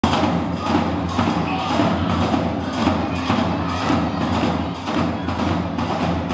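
Live Moroccan Gnawa music: a fast, steady clattering percussion rhythm with a drum and low bass notes underneath.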